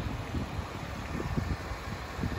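Wind buffeting the microphone with a low outdoor rumble, broken by a few faint knocks.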